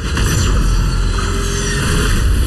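Film trailer sound effect: a loud, deep, noisy rumble with a rushing quality that starts abruptly.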